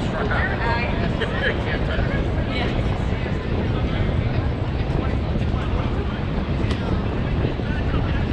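Distant voices of young players and coaches calling out across the field, over a steady low rumble.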